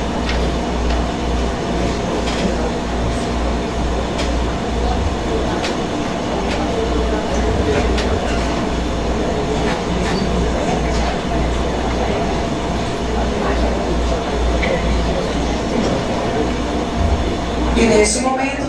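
Indistinct murmur of people talking in a room over a steady low rumble, with a few faint clicks and knocks.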